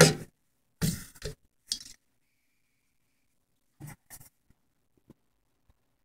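An oil can squirting oil into the box fan motor's shaft bearing, in a few short bursts: two about a second in and two more close together near four seconds in, with faint clicks of the can against the metal housing.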